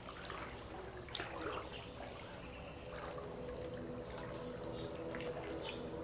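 Pool water splashing and sloshing around a swimmer moving through the water, the splashes clustered in the first couple of seconds. From about two seconds in a steady low hum runs beneath it.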